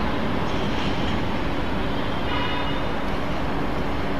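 Steady background noise, heaviest in the low range, with a faint high tone briefly a little over two seconds in.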